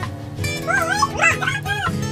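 Background music with a steady beat. Over it, from about half a second in, comes a run of high, wavering yelping calls lasting just over a second.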